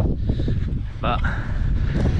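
Wind buffeting the microphone, a steady low rumble, with a man saying one short word about a second in.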